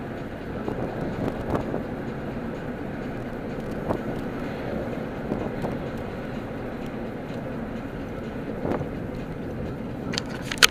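Road and engine noise inside a car's cabin while driving at a steady speed: a continuous low hum, broken by a few brief knocks.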